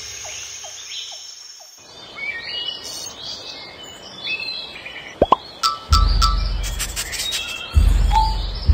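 Birds chirping over a soft forest hiss, a nature-ambience bed for a cartoon song intro. A few quick rising whistles and clicks follow, then a low, heavy musical beat starts about six seconds in.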